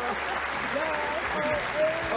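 Studio audience applauding at a steady level.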